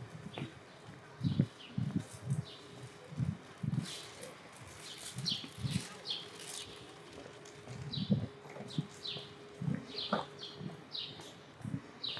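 Footsteps on pavement at a walking pace, with small birds chirping repeatedly in short high notes and a faint steady hum underneath.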